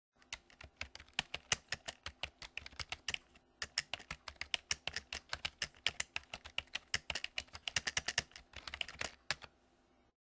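Typing sound effect: rapid, irregular computer-keyboard key clicks, several a second, with a brief pause about three and a half seconds in.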